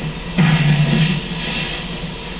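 Music from an old film's soundtrack playing on a television, heard across the room, getting louder about half a second in.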